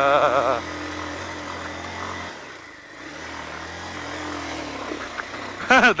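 Dirt bike engine running at low speed on a rough track, dropping quieter for a moment a little over two seconds in, then picking up again. A voice calls out over it at the start and again just before the end.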